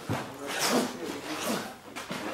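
Indistinct voices, with rustling and handling noise close to the microphone.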